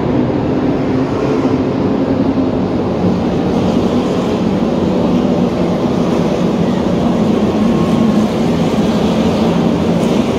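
A field of NASCAR stock cars' V8 engines running in a pack past the grandstand, a steady loud drone that swells slightly toward the end.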